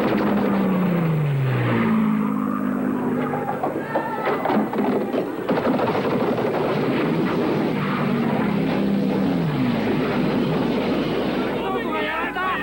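Film soundtrack of an air attack: a propeller warplane's engine passes low overhead, its pitch falling as it goes by, twice, with shouting voices and a run of sharp cracks in the middle.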